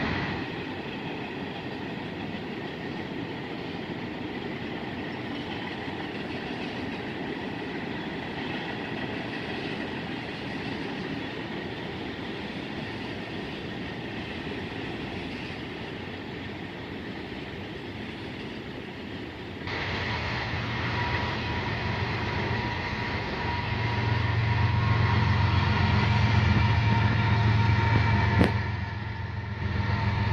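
CSX freight train cars rolling past with a steady rumble. About two-thirds of the way in the sound jumps louder, adding a steady low drone that builds and then cuts off suddenly near the end, typical of a diesel locomotive going by.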